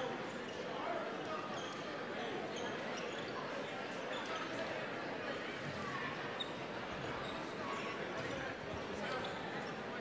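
Basketballs bouncing on a gym court over steady crowd chatter in the stands.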